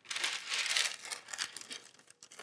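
A sheet of parchment paper rustling and crinkling as it is handled and laid flat over a shirt. The rustle is loudest in the first second, then settles into a few softer crinkles.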